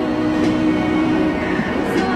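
A woman singing live on the street into a handheld microphone, holding one long note for most of the first second and a half before moving on, over a steady low rumble.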